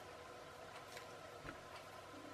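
Faint clicks and taps of small plastic clockwork parts being handled between the fingers, a few separate clicks with the loudest about one and a half seconds in, over a faint steady hum.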